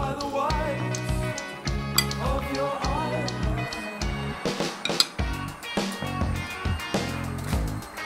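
Background music with a steady beat throughout. A couple of sharp clinks about two and five seconds in come from a table knife against a ceramic plate while toothpaste is spread on toast.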